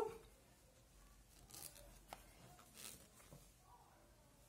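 Near silence with faint rustling of yarn and a soft click of knitting needles as stitches are worked by hand.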